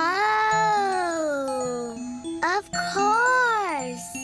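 A playful cartoon-style voice making two long, wordless drawn-out sounds of pleasure, the first sliding slowly down over about two seconds, the second rising and then falling, over light background music with chiming notes.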